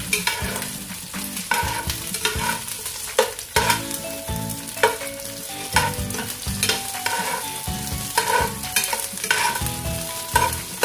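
Sliced red onions and garlic sizzling in hot oil in a nonstick pot, with a spatula scraping and tapping against the pan in irregular strokes about once or twice a second as they are stirred.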